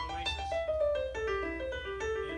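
Piano playing a run of notes that steps downward in pitch.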